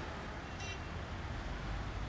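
Car engine idling with a low, steady rumble, and one brief high chirp about two-thirds of a second in.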